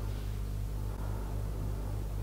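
Steady low electrical hum with a faint hiss and no other clear sound.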